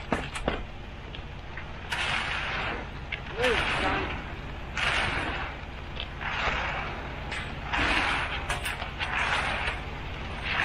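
Long-handled concrete rakes dragging and scraping through wet concrete in repeated strokes, about one every second and a half, over the steady low running of a concrete mixer truck.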